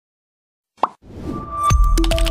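Silence, then a single short pop-like sound effect a little under a second in, followed by a swelling sound that leads into a music jingle with low beats near the end.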